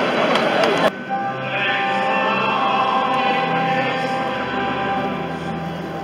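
Many voices of a crowd talking at once, cut off abruptly about a second in, then a choir singing a slow hymn with long held notes, as sung for the entrance procession at Mass.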